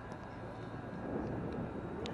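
A steady low rumble that grows a little louder about halfway through, with faint distant voices.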